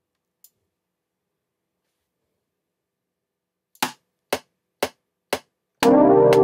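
Metronome clicks of the Reason DAW, four evenly spaced ticks half a second apart in time with 120 BPM, counting in a recording. Near the end a sustained electric-piano chord from the Velvet plugin begins over the click.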